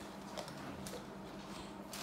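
Small scissors snipping through a doll's card-and-plastic blister packaging: a few faint, separate snips and rustles over a steady low hum.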